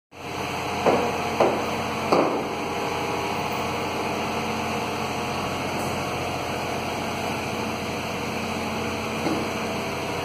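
Steady machine hum, with three short knocks about a second, a second and a half and two seconds in.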